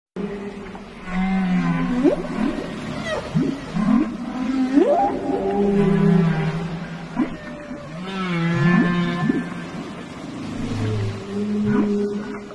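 Whale calls: long steady moans at a low pitch, broken by several quick rising whoops and higher wavering cries.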